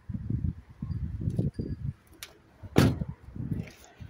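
Low knocks and rumbles of movement as someone gets out of a Honda Jazz, then a small click and the car's door shutting with one loud thud about three seconds in.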